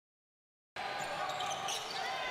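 Dead silence, then basketball game sound cuts in about three-quarters of a second in: arena ambience with a basketball being dribbled on the hardwood court.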